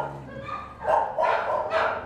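Shelter dogs barking, with a few short barks from about a second in.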